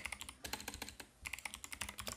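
Typing on a computer keyboard: a quick run of keystrokes, with a brief pause about a second in.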